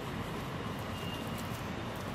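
A spatula stirring thick, wet urad dal batter in a bowl, with faint soft scrapes over a steady background hiss.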